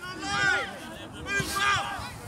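Voices calling out across the pitch, quieter than the shout just before, in two short spells about half a second and a second and a half in.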